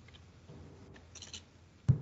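Faint clicks of a computer keyboard as numbers are typed, with one sharp, louder click near the end.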